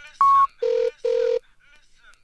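Telephone-style electronic beeps sampled in a dance track: one short high beep, then two longer, lower beeps in a double pulse, like a phone's ringing tone.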